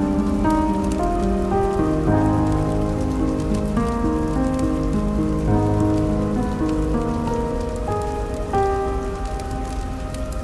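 Steady rain falling, under a slow piano melody of single held notes that step from pitch to pitch.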